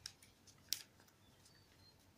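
Faint rustling of paper as a paper cutout is handled, with one short crisp tick just under a second in.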